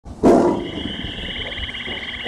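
A tiger's short, loud roar about a quarter second in, dying away within half a second, with a steady high wavering tone carrying on after it.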